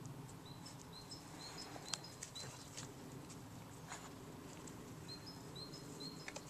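Faint birdsong: a small bird repeats short high chirps in two runs, one in the first half and one near the end. A few sharp light taps come in between, over a low steady background rumble.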